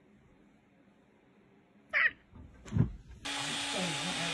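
A kitten gives one short, high meow that falls sharply in pitch, followed a moment later by a lower, louder falling sound. Near the end a steady hum starts.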